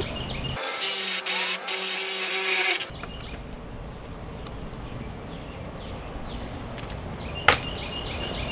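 Makita 18V cordless drill boring a hole through a wooden beam, running under load for about two seconds and then stopping. A single sharp click near the end.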